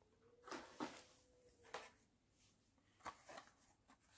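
Faint handling noise of a Hot Wheels car on its blister card being picked up: a few short crinkles and clicks of stiff plastic and card, in a cluster about half a second to two seconds in and again about three seconds in.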